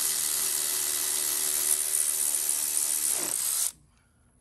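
Power tool driving in the upper mounting bolt of a power steering pump. It runs steadily with a hiss and then cuts off sharply near the end.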